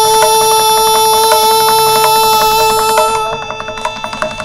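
Carnatic vocal music: a woman holds one long, steady sung note over mridangam strokes. The note stops near the end and the mridangam plays on.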